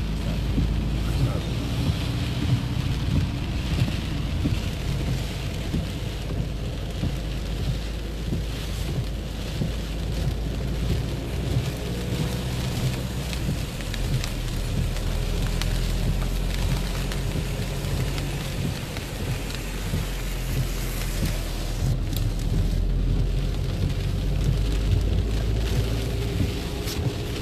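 Heavy cloudburst rain hitting the roof and windscreen of a moving car, heard from inside the cabin over a steady low rumble of road and engine noise.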